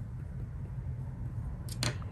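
A steady low hum of room tone, with two brief sharp clicks near the end.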